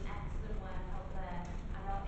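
A woman speaking, over a steady low rumble.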